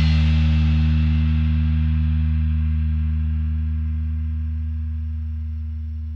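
A low distorted electric guitar and bass chord from a metal band, left ringing and slowly dying away, with cymbal wash fading out above it in the first seconds.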